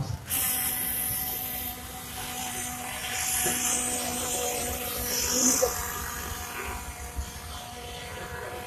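Small high-revving engines of nitro-powered RC cars buzzing with a thin, high whine that swells and fades a few times, over a steady hum.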